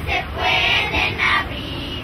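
A children's choir singing into microphones, the phrase fading about a second and a half in.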